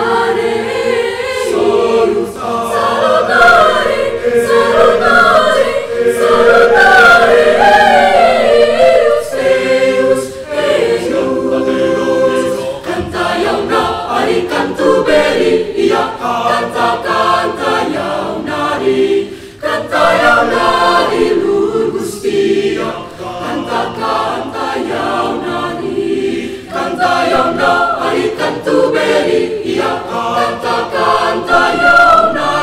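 A mixed-voice school choir of boys and girls singing in parts, full chords with moving melodic lines, with brief breaks between phrases.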